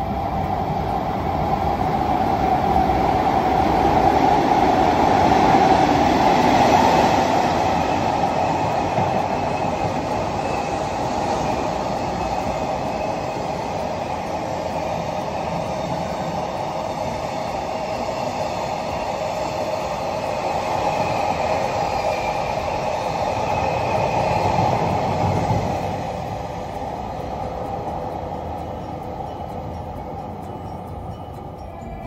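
JR Freight container train passing through the station, a continuous rolling rumble of wheels on rails. It is loudest in the first several seconds, runs on steadily, swells again briefly, then fades away near the end.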